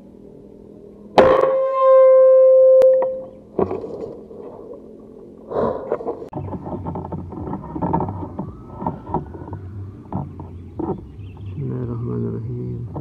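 An air rifle shot about a second in: a single sharp crack, followed at once by a loud steady ringing tone for about two seconds. Scattered clicks and knocks follow.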